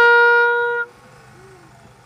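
A brass instrument holds one long, steady note that cuts off just under a second in, closing a run of short quick notes; after it only a faint background murmur remains.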